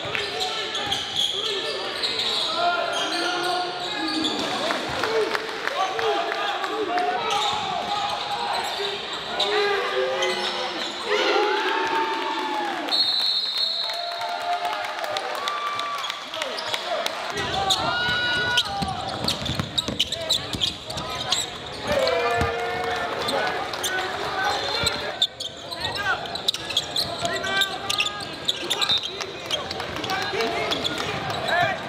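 Live game sound in a gym: a basketball bouncing on the hardwood court, sneakers squeaking as players cut, and indistinct voices of players and spectators echoing in the hall.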